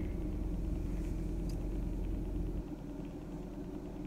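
A car engine idling, heard from inside the cabin as a steady low hum. The lowest part of the hum drops a little about two and a half seconds in.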